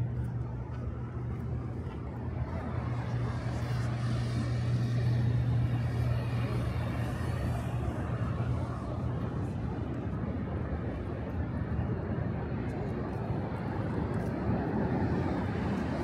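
Urban road traffic heard from above the street: a steady rush of engines and tyres with a low hum, swelling for a few seconds as vehicles pass and then settling.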